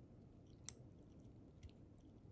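Near-silent room tone with one sharp little click less than a second in and a fainter tick later: a metal sectional matrix band being handled against a plastic typodont tooth.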